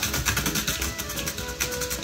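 Background music with held notes over a quick, steady beat.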